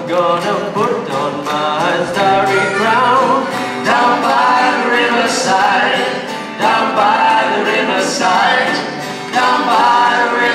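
Live acoustic band playing a spiritual: two acoustic guitars strummed under singing voices.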